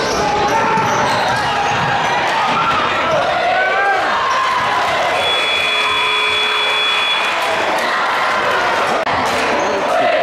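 Basketball game in a school gym: crowd voices and shouts over the ball bouncing on the hardwood court, with a steady high tone held for about two seconds midway.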